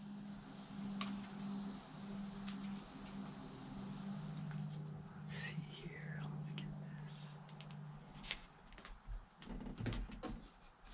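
Light clicks and handling sounds of fingers pressing and positioning a rubber tailgate seal strip against the plastic tailgate edge and bed rail, over a low steady hum that drops in pitch about four seconds in and fades near the end.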